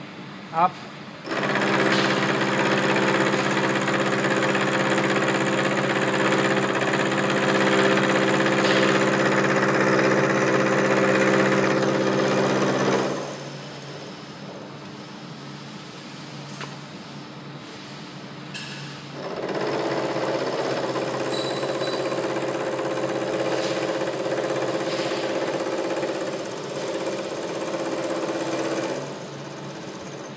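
Vertical milling machine's end mill face-milling a metal workpiece held in a vise, each pass 1 mm deeper: a loud, steady cutting sound with a hum of several steady tones. It comes twice, each about ten seconds long, with the machine running quieter in between.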